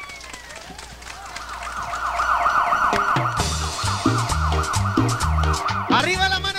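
A siren-like yelp, rising and falling about four times a second and growing louder, opens a live tropical band's number. About three seconds in, the bass and percussion come in under it.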